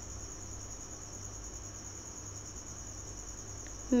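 Steady high-pitched background whine with a low hum beneath it, unchanging throughout.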